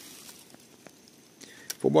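Quiet pause with a few faint, short clicks, then a man starts speaking near the end.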